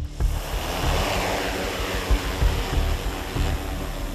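Large quadcopter drone's propellers spinning up for take-off, a loud rushing whir that starts suddenly, swells over about the first second and then holds steady, with the prop wash blowing across the microphone.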